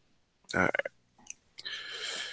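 A brief spoken "all right" over a video call. It is followed by a faint click, then a low steady hiss of room noise as another participant's microphone comes on.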